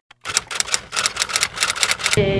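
Typewriter keystroke sound effect: a rapid, irregular run of key clacks starting a moment in.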